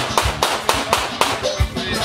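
Band music with quick, even handclapping, about five claps a second, that fades out after about a second and a half.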